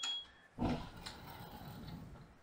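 A smoke alarm's high steady tone, set off by baking, cuts off about half a second in. A short breathy 'oh' follows, then faint room hiss.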